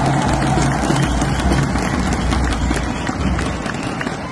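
A large audience applauding in a big hall: many overlapping hand claps mixed with crowd noise.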